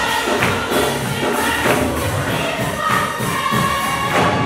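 Gospel choir singing with instrumental accompaniment over a steady beat.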